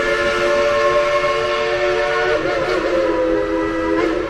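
Whistle of the Dollywood Express steam locomotive blowing one long, steady chord of several notes, its pitch shifting slightly a little past halfway through.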